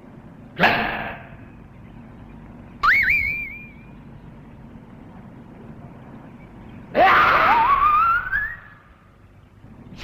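Television sound effects for Ultraman Jack: a sudden swooping sound about half a second in and a short rising cry about three seconds in. From about seven seconds in comes a rising whoosh with a climbing whine lasting about a second and a half, his take-off into flight.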